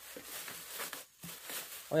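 Clear plastic bag rustling and crinkling as hands unwrap a plastic container from it, with a brief pause about a second in.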